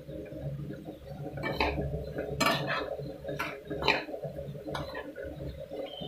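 Steel spoon stirring grated carrots and sugar in a non-stick kadhai, with irregular clinks and scrapes of the spoon against the pan, about one every second.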